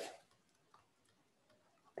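Near silence: room tone with a single faint tick about three-quarters of a second in.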